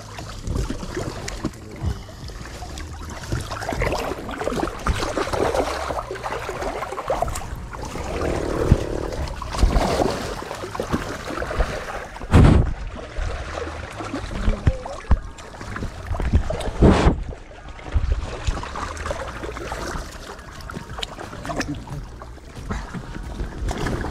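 Muddy pond water sloshing and splashing around an action camera that dips in and out of the water, with two louder thumps past the middle, about four seconds apart.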